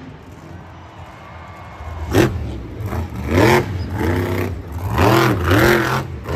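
Monster truck's supercharged V8 engine revving in a series of quick rising-and-falling blips. There is a sharp bang about two seconds in, just before the revving starts.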